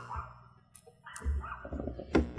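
A short pause in a woman's speech, filled with soft breathing and two faint clicks around the middle.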